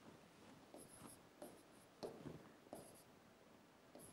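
Faint marker pen writing on a whiteboard: a few short runs of scratchy strokes, about a second apart.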